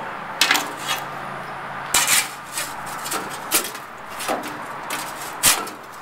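A series of short, irregular metal scrapes and clanks on a smoker's expanded-metal cooking grate, about eight in all.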